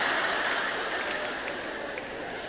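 Audience laughing together, the laughter slowly dying away.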